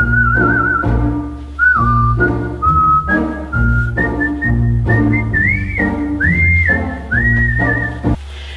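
Background music: a whistled melody with little slides and wavers over a rhythmic accompaniment with steady bass notes.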